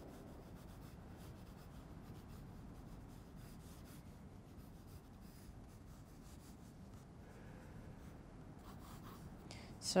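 Faint scratching of a graphite lead-holder pencil sketching light lines on drawing paper on a clipboard, over a steady low room hum.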